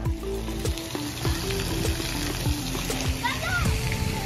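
Background music with a steady beat over the steady splashing and spraying of water at a splash pad. About three seconds in, a child's high voice briefly calls out.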